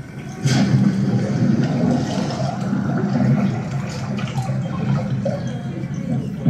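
A water sound effect from a projection-show soundtrack, a rushing wash of water that swells in about half a second in and runs on steadily.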